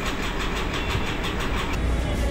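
An engine running steadily with a low rumble and a fast, even pulsing that stops shortly before the end.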